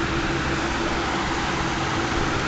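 Steady background hiss with a low hum under it, even and unchanging throughout.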